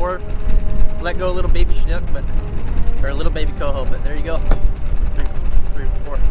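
A man's voice talking in short stretches over a heavy, uneven low rumble.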